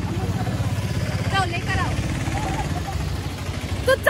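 Small engine of an auto-rickshaw (three-wheeler) idling close by, a steady, rapid low putter.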